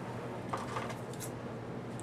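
Cotton patchwork squares rustling as they are handled and gathered, with a few faint light ticks.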